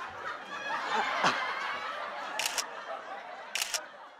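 Laughter with two camera shutter clicks, about a second apart, in the second half.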